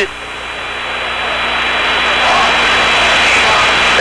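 Large stadium crowd, a steady noise of many voices slowly growing louder, heard on an old television broadcast soundtrack with a thin steady high tone over it.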